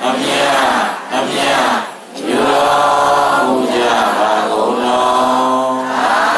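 A Buddhist congregation chanting together in unison, in short phrases with breaks about one and two seconds in, then one long unbroken phrase.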